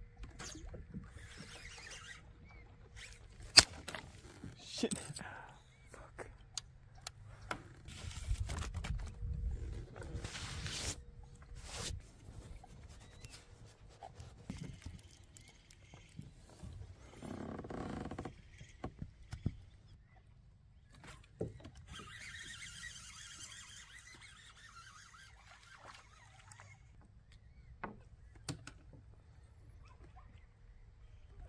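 Phone camera being handled: scattered clicks and knocks, with cloth rubbing over the microphone. A single sharp click about three and a half seconds in is the loudest sound.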